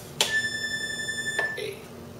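A Hohner diatonic button accordion sounding one high treble note, an A, on the push as the bellows close. The note starts sharply, is held for about a second, and stops cleanly.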